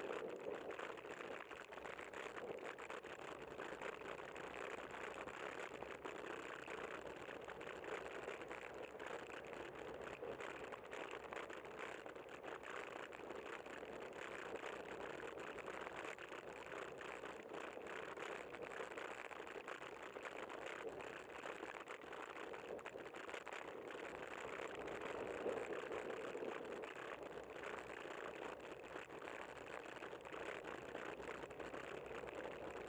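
Steady riding noise from a bicycle-mounted camera in city traffic: wind on the microphone and the hum of surrounding cars and tyres, swelling slightly late on.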